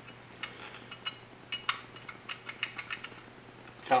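A string of light, irregular clicks and taps as a Toolitin double-cylinder foot pump, plastic and metal, is handled and turned over in the hands.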